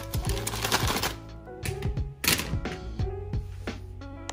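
Background music with a beat, over scissors snipping through a plastic bag of sand and the bag crinkling.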